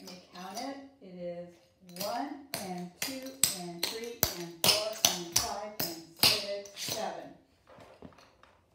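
Clogging shoe taps striking a concrete floor as the trainer step is danced: a run of sharp clicks, about two a second in the second half, with a voice over them.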